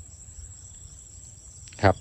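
Insects in a rice paddy trilling in one steady, unbroken high-pitched tone.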